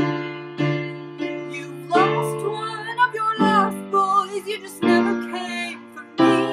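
Piano chords played in a steady pulse over a sustained bass, with a wordless sung line wavering above them between about two and five seconds in.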